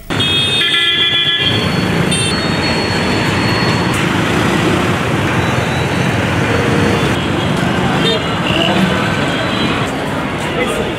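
Busy street traffic with engines running and a steady wash of road noise. A vehicle horn honks for about a second near the start, and there is a shorter toot about two seconds in.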